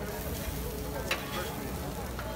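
Okonomiyaki pancakes of cabbage batter sizzling on a flat griddle, with a metal spatula clinking against the griddle about a second in.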